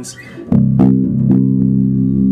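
Skjold six-string electric bass played through an amp: a deep note plucked about half a second in, struck again a little later and left ringing, with plenty of low-end rumble and girth.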